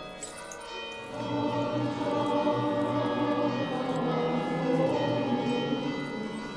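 Choir singing a church hymn in long, sustained notes that swell about a second in, with small bells jingling near the start.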